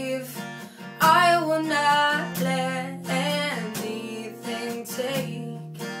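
Acoustic guitar strummed with a capo, and a woman singing over it in held, sliding phrases, a slow ballad.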